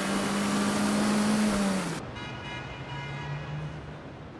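Toyota Corolla Levin's four-cylinder engine driving at steady revs under loud road and wind noise, its note creeping up slightly. About two seconds in it cuts to a quieter, lower engine drone.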